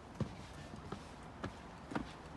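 Footsteps on wooden boards, a step a little more than every half second.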